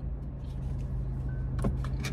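Car engine idling, heard from inside the cabin as a steady low hum, with a few faint clicks near the end.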